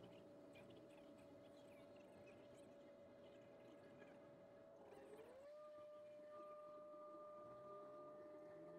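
Very faint, steady whine of a turboprop airliner's engine and propeller heard from inside the cabin as the aircraft rolls along the runway. About five seconds in, the pitch dips and then rises again as the power changes, and a second, higher tone joins it.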